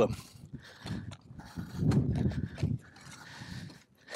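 A spade digging into dry, compacted soil: a few irregular thuds and gritty scrapes as the blade is driven in and levers the earth out, busiest about halfway through.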